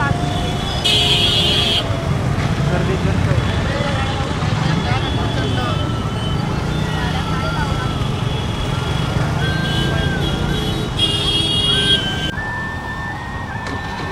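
Traffic noise in a standstill jam: a steady rumble of idling car, bus and motorbike engines, with two horn blasts, one about a second in and another near the end. Voices and some music are mixed in.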